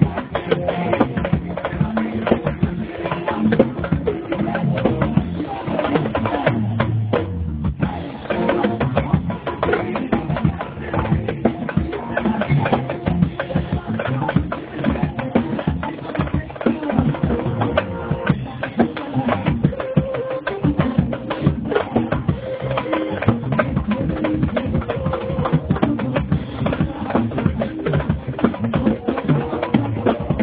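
Acoustic drum kit played live, a fast, busy run of strokes on the drums and cymbals that keeps going without a break.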